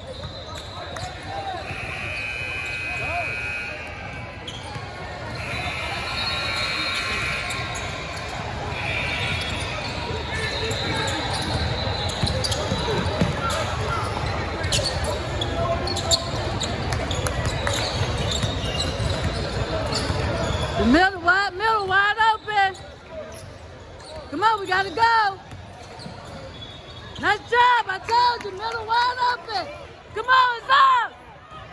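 Basketball game on a hardwood court: a ball dribbling and sneakers squeaking over the steady din of a busy gym. About two-thirds of the way through the din drops away suddenly, and high-pitched shouts from the sidelines come in short bursts.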